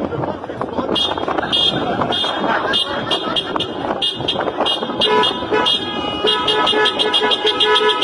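Car horns honking in repeated short toots, joined about five seconds in by a lower-pitched horn that sounds on and off.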